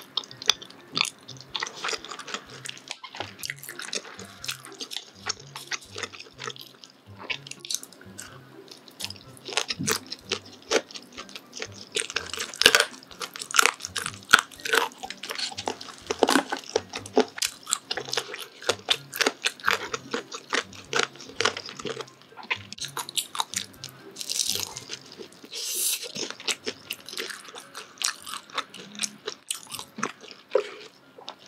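Close-miked eating: a person chewing and biting into chewy rice-cake tteokbokki and sundae, with wet smacking and many short mouth clicks. It is busiest about twelve to seventeen seconds in.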